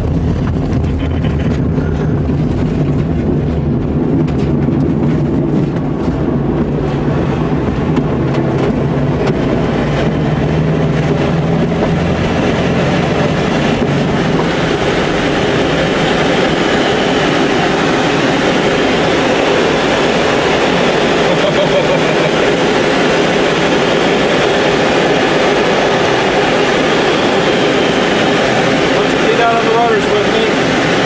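Glider's takeoff roll on aerotow: a steady low rumble of the wheel running over the ground, with the tow plane's engine ahead. About fourteen seconds in the rumble fades and a rising, steady rush of air over the canopy takes over as the glider lifts off and climbs on tow.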